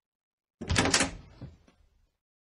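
Front door being opened: a short clatter of clicks about half a second in, trailing off over about a second.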